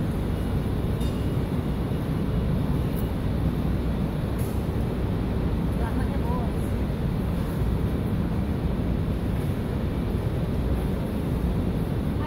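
Steady, even low rumble of urban background noise, with faint distant voices about six seconds in.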